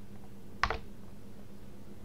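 A single short click about half a second in, over a faint steady hum.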